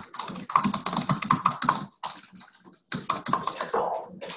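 Typing on a computer keyboard: two quick runs of keystrokes with a short pause between them.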